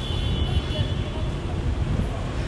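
Low rumble of city street traffic, cars passing close by on the road.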